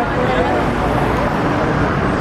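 Busy city street ambience: a steady din of many people's voices mixed with traffic noise.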